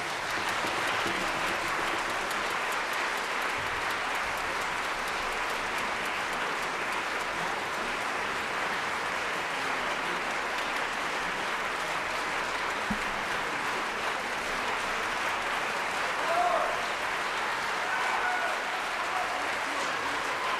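Concert-hall audience applauding steadily, an ovation, with a few voices calling out near the end.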